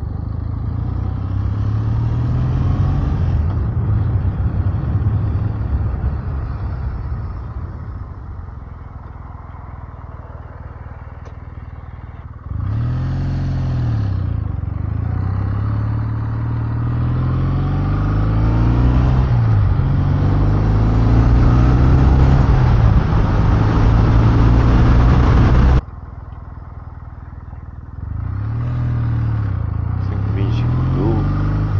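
Kawasaki W650 air-cooled parallel-twin engine pulling away and accelerating through the gears, its pitch climbing and dipping at each shift while wind rush grows with speed. About two-thirds of the way through the sound drops suddenly as the throttle closes, and it picks up again near the end.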